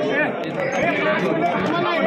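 Several people talking at once: overlapping, indistinct chatter of voices.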